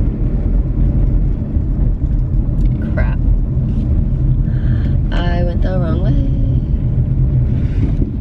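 Steady low road and engine rumble heard inside the cabin of a moving car. A short vocal sound from the driver comes about three seconds in, and a longer one with wavering pitch about five seconds in.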